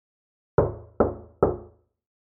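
Three loud knocks on a door, about half a second apart, each ringing out briefly.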